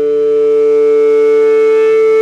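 Electric guitar sustaining one loud, steady tone with its overtones, held without change.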